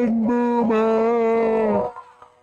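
A voice holding one long, steady chanted note, broken briefly twice, which stops near the end.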